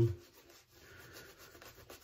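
A shaving brush working lather over a bald scalp: a faint, continuous wet rubbing.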